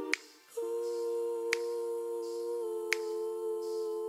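Outro background music: a held, sustained chord that shifts slightly about halfway through, with a sharp snap-like click on the beat about every one and a half seconds.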